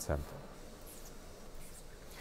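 Faint, steady, even background hiss of factory-floor ambience, with the tail of a narrator's word right at the start.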